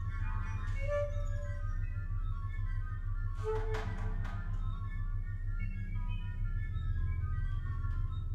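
Atonal free group improvisation by organ, bass, guitar, drums and saxophone: a sustained low drone under scattered short notes with no key centre, and a cluster of noisy hits about three and a half seconds in.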